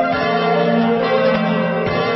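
Cartoon opening theme music: an instrumental passage of bell-like chimes struck in quick succession over held notes.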